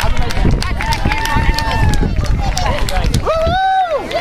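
People's voices calling out, with a long drawn-out cry near the end.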